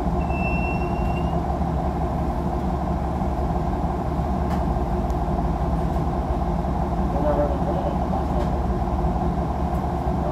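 Inside the cabin of a 2016 Nova Bus LFS city bus: the steady drone of the bus running. A short high beep lasts about a second near the start.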